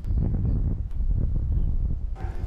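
Wind buffeting the microphone: a loud, noisy low rumble.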